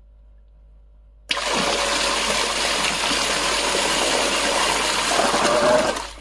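Seaflo 1100 GPH 12 V automatic bilge pump kicking on about a second in as its built-in float switch is tripped, pumping with a loud, steady gush of water churning the sink. It cuts off right at the end.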